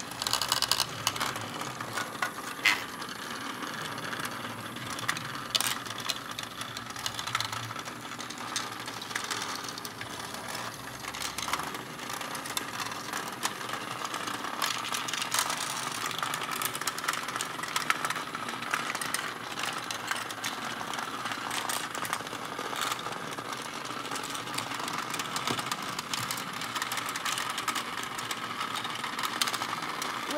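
Several HEXBUG Nano Nitro vibrating robot bugs buzzing and rattling steadily as they skitter over plastic track and habitat pieces, with a dense patter of small clicks.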